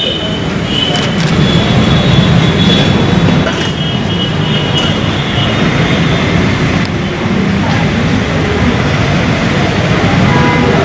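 Steady outdoor roadside background noise: a loud low rumble like traffic, with a few faint high tones in the first half.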